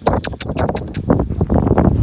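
Quick, rhythmic footfalls and rustling on dry grass and dirt as someone runs with a phone, with thumps and rumble from the phone being jostled.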